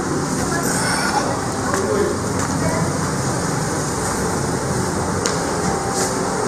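Busy indoor public-space ambience: a steady wash of noise with background voices and a couple of faint clicks.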